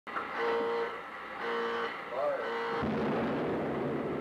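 Intro audio: a voice in short, drawn-out phrases, then a sudden low rumble from just under three seconds in that fades away.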